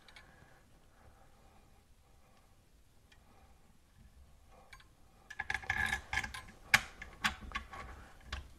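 Hands fitting a washer and mounting hardware onto a faucet's threaded shank under a sink: faint handling at first, then a cluster of small clicks and rubbing in the second half, with one sharper click near the end.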